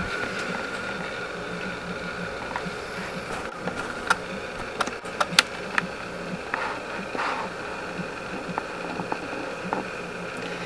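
Steady low electrical hum and buzz from the bench test equipment, with a few light clicks and taps scattered through the middle.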